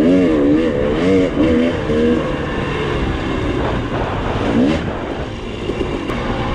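KTM two-stroke dirt bike engine under way on a trail, its revs rising and falling quickly with the throttle for the first two seconds. It then runs more evenly, with one short rise in revs near the end.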